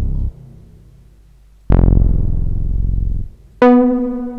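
A Moog-style synth bass patch played on FL Studio's Sytrus: a deep note starts a little under two seconds in with a bright attack that quickly mellows, and it holds for about a second and a half. Just before the end a higher, steady synth note starts.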